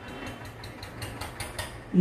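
Marker writing on a whiteboard: a quick, irregular run of short scratchy strokes over a low steady hum.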